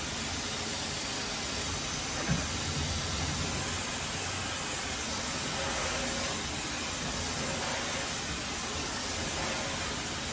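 Hand-held hair dryer running steadily, an even rushing noise of air blown onto wet hair.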